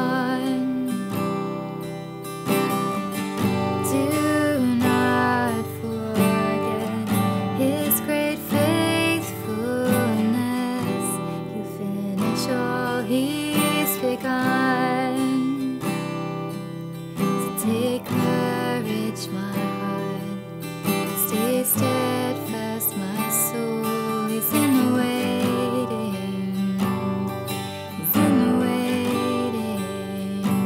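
A woman singing a slow worship song to her own strummed acoustic guitar, one continuous verse.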